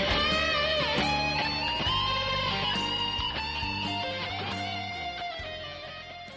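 Electric guitar lead, a Strat-style guitar played through a Flamma FX-100 multi-effects pedal, with bent and vibrato notes. Over the last couple of seconds a held note dies away.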